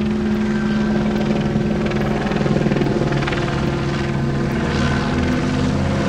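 Helicopter flying overhead: a steady low rotor chop and engine drone.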